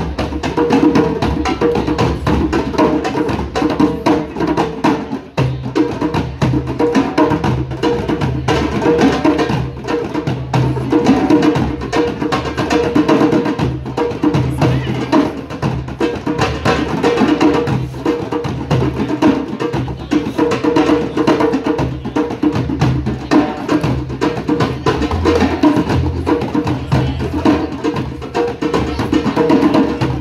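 Group of hand drums, several djembes and a metal doumbek, playing the Middle Eastern ghawazee rhythm together in a dense, unbroken groove.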